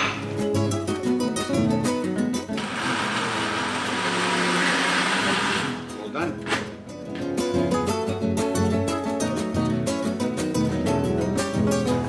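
Countertop jug blender running for about three seconds, grinding the cooked tomato, onion and cashew gravy to a paste. Acoustic guitar background music plays throughout.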